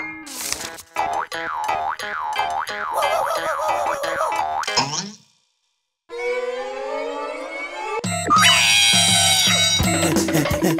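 Cartoon soundtrack: bouncy music with springy boing effects. It cuts to silence about five seconds in, then a falling glide follows. Near the end comes a loud, wavering cartoon scream from a cat-like character.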